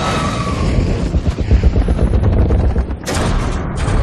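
Movie battle sound effects: a deep explosion rumble with rapid gunfire over it, then two sharp, loud blasts about three seconds in.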